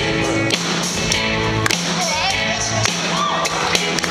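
Live rock band playing: drum kit keeping a steady beat of about two hits a second under bass and electric guitar.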